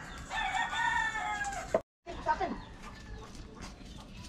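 A rooster crows once, one long call lasting about a second and a half, followed by a sudden break in the sound.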